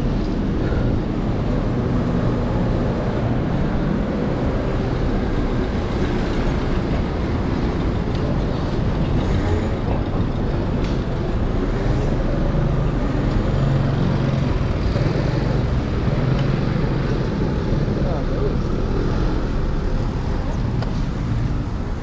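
Steady city street traffic and road noise heard from a moving bicycle, with a dense low rumble of wind on the microphone.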